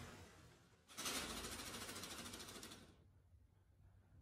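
Logo-animation sound effect: a rapid, even run of fine clicks, like a sewing machine or typing. It starts suddenly about a second in and fades away over about two seconds, after the tail of a whoosh.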